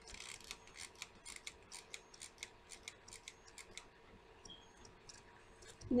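Artificial craft leaves being pulled apart and handled: a quick run of light, crisp crinkling clicks, about four or five a second, that dies away about four seconds in.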